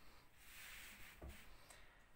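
Near silence, with a faint soft rustle of hands moving over a knitted wool sweater and a small tick just after a second in.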